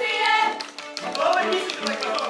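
Live music-theatre: voices singing and speaking over a small string ensemble with violin and cello, with a run of short, light taps in the second half.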